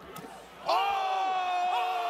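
A person's voice holding one long, high shout, starting about two-thirds of a second in, over faint crowd noise.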